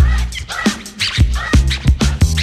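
Mid-1980s old-school hip hop dub mix without vocals: a beat of regular drum hits over deep bass, with turntable scratching in short back-and-forth sweeps.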